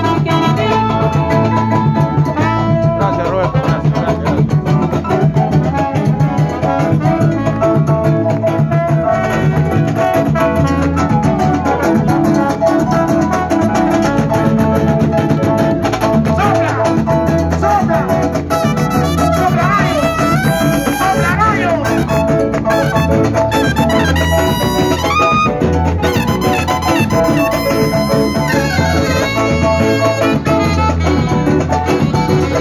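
A live band with a brass section of trumpets, trombone and saxophone playing Latin dance music in the salsa style, loud and steady with a driving beat.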